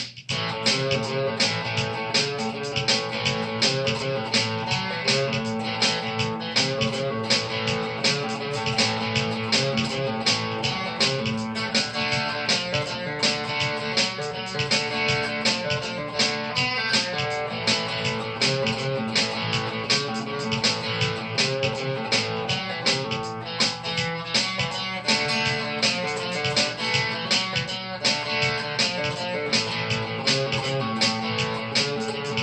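Solid-body electric guitar playing an instrumental rockabilly part with a steady, driving picked rhythm, without vocals.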